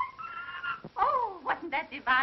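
A woman's high, held operatic singing note that fades out under a second in, followed by a falling vocal glide and several short, squeaky sliding vocal sounds.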